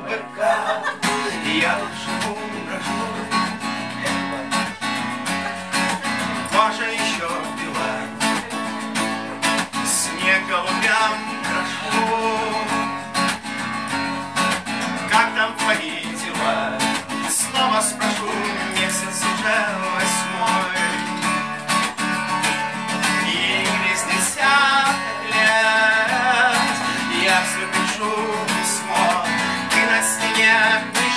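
Steel-string dreadnought acoustic guitar strummed in a steady rhythm, with a man's wordless singing over it in stretches.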